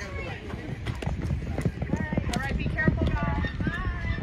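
Horse galloping through a barrel-racing pattern on arena dirt, its hoofbeats a quick run of dull thuds. People's voices shout and call over them, growing louder in the second half.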